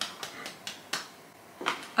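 Gift wrapping being handled: a scattering of short crackles and taps, about six or seven over two seconds.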